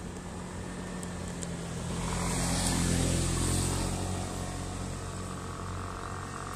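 A road vehicle going past, its sound swelling to a peak about three seconds in and then fading, over a steady low hum.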